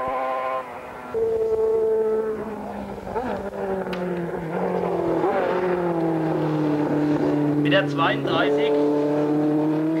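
Racing motorcycle engines at high revs going past. A steady high engine note steps up about a second in, slides slowly lower through the middle, then jumps back up near the end.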